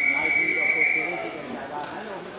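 Wrestling referee's whistle: one long steady blast that stops a little over a second in, halting the action, with voices in the background.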